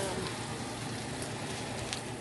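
Onions simmering in a frying pan with water just added to make gravy: a steady sizzling hiss with a few small crackles.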